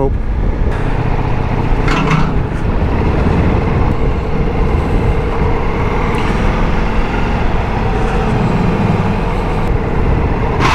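Strong wind buffeting the microphone on a moving motorcycle, a steady low rush, with the Ducati Multistrada V4 S's engine running low underneath at low speed.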